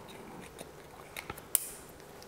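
Small clicks and handling noises of a throttle's wiring connector being fitted back onto an electric trials bike, with one sharper click about one and a half seconds in.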